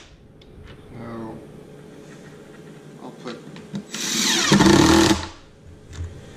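Cordless drill driving a wood screw into plywood: one loud run of about a second, starting about four seconds in, after a stretch of quieter handling clicks.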